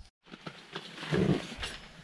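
A brief dropout, then low rustling and a few light knocks of someone moving about and handling gear inside a fabric ice-fishing tent, a little louder just past the middle.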